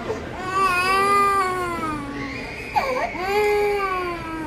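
An infant crying hard: two long wails with a sharp gasp of breath between them, as her ear is being pierced.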